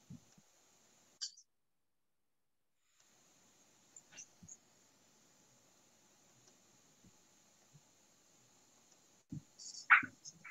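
Near silence on a video-call audio line: faint hiss with a few scattered faint clicks and a low thump near the end. For about a second and a half early on the line goes completely dead.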